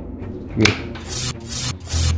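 A sharp click about half a second in, followed by several short bursts of rubbing, rustling noise.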